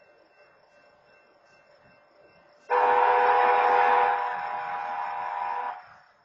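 Locomotive air horn, BNSF engine 6999's, sounding one long blast of about three seconds: a chord of several notes that starts sharply a little over halfway in, drops slightly after its first second or so, and cuts off just before the end.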